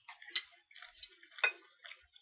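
Close-miked chewing: a run of small wet mouth clicks and crackles, with two sharper, louder clicks, one early and one about a second and a half in.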